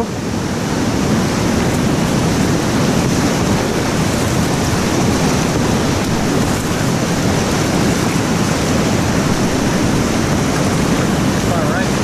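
Whitewater rapid rushing, loud and steady, heard from a kayak in the middle of the current.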